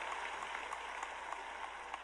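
A small group of people applauding, a dense patter of hand claps that thins out near the end.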